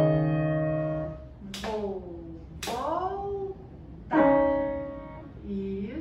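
Grand piano: a chord struck at the start rings and fades over about a second, and a second chord is struck about four seconds in and fades the same way. Between and after the chords, a high voice is heard briefly.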